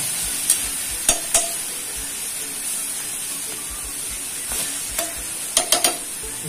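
Chicken livers sizzling steadily in a stainless steel frying pan, with scattered sharp clicks of a stirring utensil against the pan and a quick run of them near the end.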